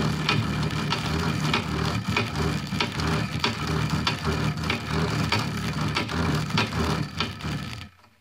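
Brushless front-load washing machine motor, hand-cranked as an AC generator, grinding as it turns. Two copper wires shorted across its output arc and crackle, with a click about twice a second. The sound stops suddenly near the end.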